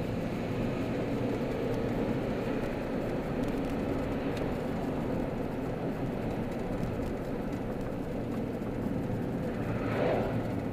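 Steady engine and road noise inside the cabin of a car driving along at street speed, with a brief louder rush near the end.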